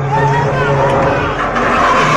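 A truck engine running steadily with men shouting over it. The engine's steady note drops out about a second in, and a louder, noisier burst comes near the end.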